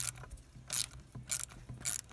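Socket ratchet clicking in four short strokes about half a second apart, as it loosens the lower bolt of an ATV brake caliper.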